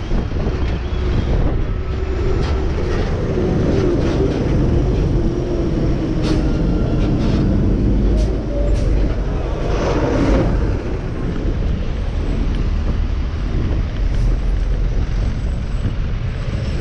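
Loud, close-up heavy traffic in a jam: the engines of a truck and the surrounding cars running, over a deep steady rumble. There are a few sharp clatters and a louder swell about ten seconds in.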